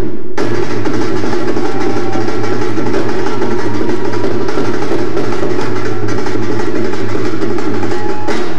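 Loud Punjabi bhangra dance music driven by dhol drumming, played for a stage performance. The full mix comes back in sharply just after the start and then runs on at a steady, very high level.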